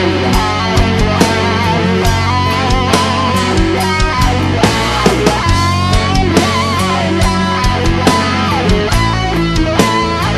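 Instrumental section of a stoner/doom metal song: distorted electric guitars, bass and drums, with a lead guitar line that bends and wavers in pitch.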